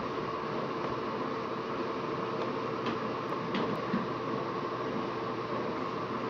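Steady mechanical hum and hiss with a faint held tone, typical of a running fan. A few faint ticks come around the middle.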